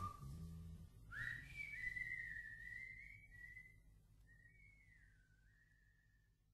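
Faint whistling: a single high tone that starts about a second in, wavers and glides up and down, and fades away near the end, as the drum-led music dies out in the first second.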